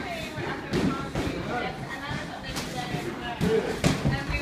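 Sparring in a boxing ring: three sharp thuds of gloved punches and footwork on the ring canvas, the last near the end the loudest, over background talk in a reverberant gym.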